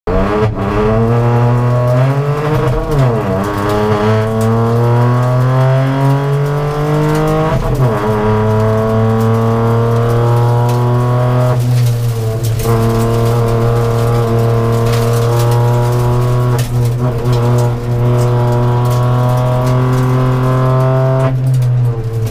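Rally car engine heard from inside the cabin, running hard along a stage. Its note dips and climbs again at gear changes about three and eight seconds in, then holds a near-steady, slowly rising pitch.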